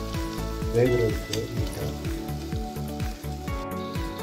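Water poured into a hot pan of sautéed cabbage, sizzling as it hits the pan.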